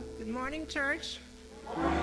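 Live church praise music: the band drops out and a singer's voice holds a short, wavering phrase, then the bass and band come back in near the end.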